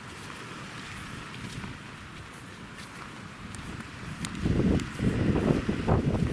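Strong wind rushing through palm fronds and brush. About four seconds in, gusts start buffeting the microphone with a loud, low rumble.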